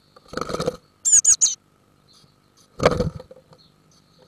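Small bird's wings fluttering close up inside a wooden nest box as it arrives, then three quick, loud high chirps falling in pitch, then another short flurry of wing and body noise.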